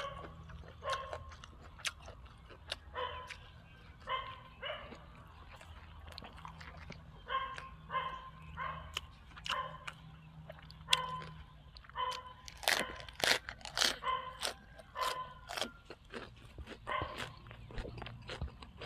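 Crunching and chewing of raw vegetables close to the microphone, with many sharp crunches. A dog barks in short yaps again and again in the background.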